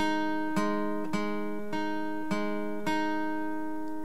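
Acoustic guitar played with a pick: a repeating single-note riff on the D and G strings at the 6th and 8th frets, about two notes a second, each note ringing into the next.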